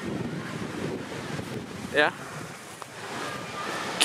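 Wind buffeting the camera's microphone: a steady rushing noise, with one short word, "yeah", about halfway through.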